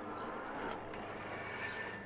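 An Engwe EP-2 Pro fat-tyre e-bike rolls up and brakes to a stop. Its brakes give a brief, high-pitched squeal for about half a second near the end.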